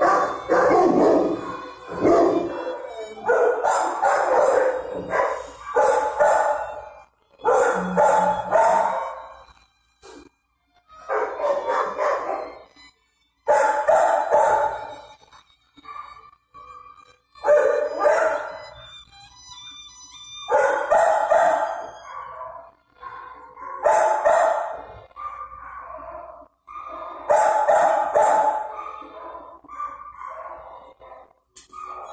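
Dogs barking and howling in a shelter kennel, in repeated bouts of a second or so with short gaps between them.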